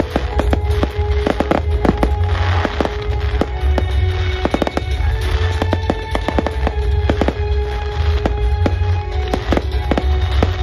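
Aerial fireworks going off in a rapid, irregular string of bangs and crackles, over music playing.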